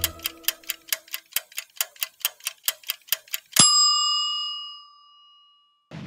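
A ticking-clock sound effect, fast ticks at about four or five a second, ending about three and a half seconds in with a single bell ding that rings out and fades.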